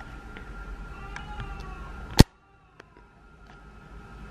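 A toddler's faint, distant voice wailing in another room, over a low room hum. About two seconds in comes a single sharp click, after which the background drops away.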